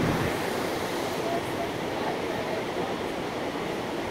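Ocean surf breaking on a beach, heard as a steady, even rush of waves.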